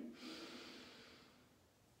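A woman's slow, faint inhale through the nose, tapering off over about a second.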